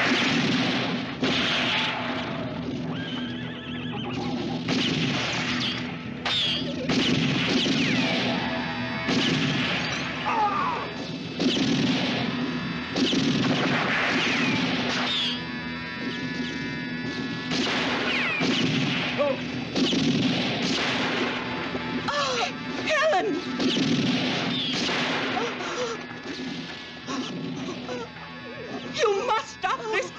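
Film gunfight sound: a long string of revolver shots, each a sharp crack with an echo, over background music, with scattered shouts.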